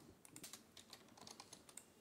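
Faint, scattered clicks of computer keyboard keys, a dozen or so light taps, as code is copied and pasted.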